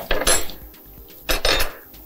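Plates and cutlery clattering twice, a second or so apart, as food is served and plates are handled on a counter.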